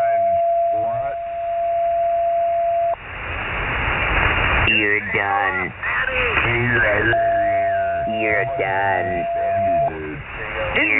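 Amateur radio single-sideband audio on the 40-metre band. A steady whistle-like tone, a carrier heterodyne over the channel, holds for the first three seconds and comes back at about seven seconds, stopping just before the end. Band hiss fills a gap at about three to five seconds, and voices talk through most of the rest.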